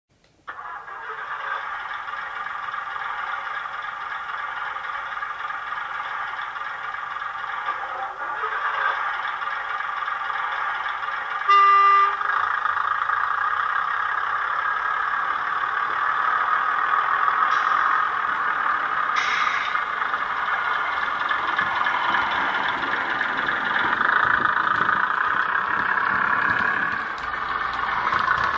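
Model Class 101 diesel multiple unit sound played by a DCC sound decoder through a small sugarcube speaker. The diesel engines start up about half a second in and run steadily. A short horn blast comes just before twelve seconds and is the loudest sound.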